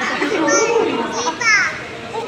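A young child's high voice, vocalising without clear words, with a short falling squeal about one and a half seconds in.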